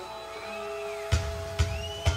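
Live rock music: sustained held notes with a high sliding tone over them, then the drum kit comes in about halfway through with heavy kick-drum beats.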